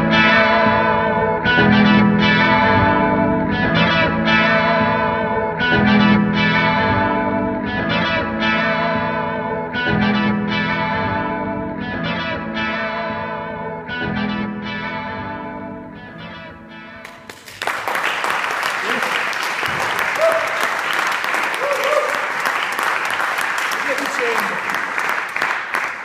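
Four-string wine-box guitar with a mandolin bridge and pickup, played through a pedalboard of effects into an amp: a low figure repeating about every two seconds, then ringing out and fading. About 17 seconds in, applause breaks out, with a few voices.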